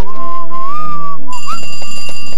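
A whistled note wavering gently around one pitch for about a second over soft music, as a cartoon sound effect, followed by steadier high tones in the second half.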